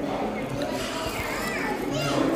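Speech: a woman and a child talking.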